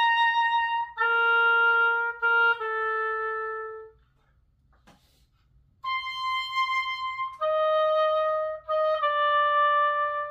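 Oboe playing slow held notes, each phrase stepping down in pitch; it stops for about two seconds near the middle, then resumes with more sustained notes.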